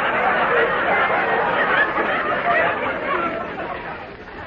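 Studio audience laughing at a punchline, the laughter fading away.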